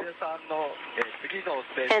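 Speech only: a man talking, a little softer than the talk either side.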